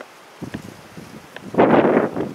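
Wind buffeting the microphone: quiet at first, then a short, loud gust in the last half second.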